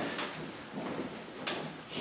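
A person shifting and rolling over on a padded massage table: rustling of the table cover and body against it, with two brief soft knocks, one just after the start and one about a second and a half in.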